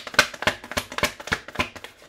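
Tarot cards being shuffled by hand: a quick, even run of card slaps, about six or seven a second.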